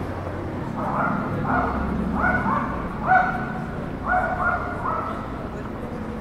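A dog barking, about eight short barks in clusters of two or three, over low street background noise.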